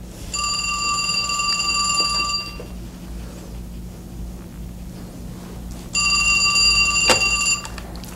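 A telephone ringing twice, each ring lasting about two seconds with a pause of about three and a half seconds between them, and a sharp click near the end of the second ring.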